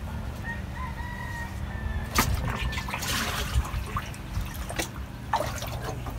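A rooster crows once, a single held call in the first couple of seconds. Water splashes and sloshes as buckets are dipped into a plastic drum, and a steady low drone runs underneath.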